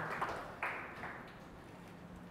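Audience applause tailing off, ending in a few scattered claps in the first second.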